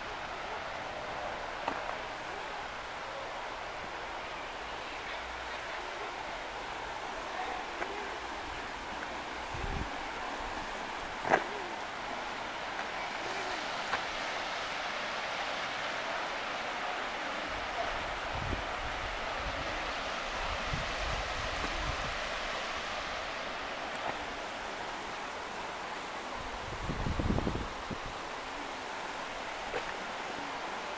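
Steady rush of water from a shallow river's rapids below the bridge, growing fuller for a stretch in the middle. There is a sharp click a little past a third of the way in, and a few low thumps near the end.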